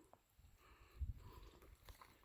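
Near silence with faint footsteps on wet ground, the firmest soft thud about a second in.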